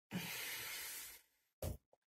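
A long breathy exhale of about a second, starting suddenly and fading out, followed by a short soft sound.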